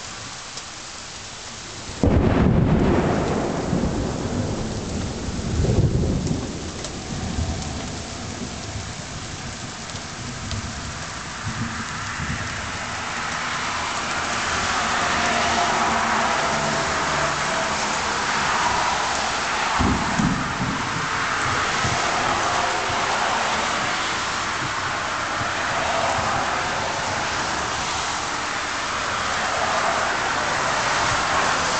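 A sudden loud thunderclap about two seconds in, rumbling on for several seconds with a second swell, then heavy rain pouring down more and more steadily. A short low thump comes partway through the rain.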